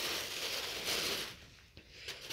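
Thin plastic carrier bag rustling and crinkling as a hand rummages inside it and pulls out clothing, for about a second and a half before it dies away.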